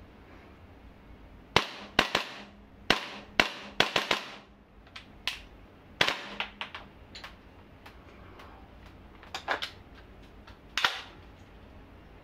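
Airsoft rifle test-fired in semi-automatic: about twenty single sharp shots in short, irregular strings, starting about a second and a half in and stopping near the end, with pauses between the strings.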